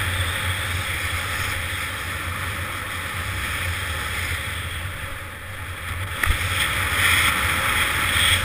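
Wind buffeting an action camera's microphone and skis hissing on packed snow at speed, a steady rushing noise. It drops briefly about five seconds in, then a knock comes and the hiss grows louder.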